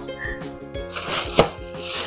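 Plastic air-pillow packing crinkling and rustling as it is handled, with a sharp crackle about halfway through, over soft background music.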